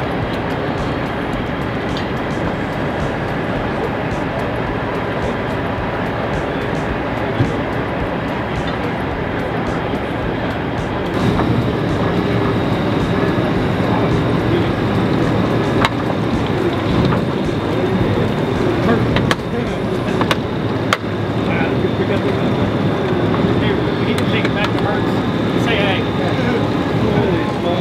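Tow truck engine running steadily as its rig hoists a sunken car out of the river; the engine note gets louder about eleven seconds in as the lift takes the car's weight.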